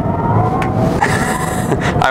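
Tesla Cybertruck accelerating hard from a launch, heard inside the cabin: a faint electric motor whine that rises slightly over steady tyre and road rumble, with a burst of hiss about a second in.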